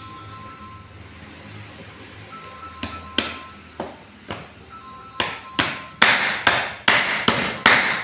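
Hammer striking a wooden formwork box, about eleven blows. A few light taps come first, then from about halfway a quicker run of harder blows, two to three a second.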